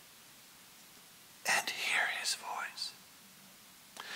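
A man whispering a few words about a second and a half in, between stretches of near silence.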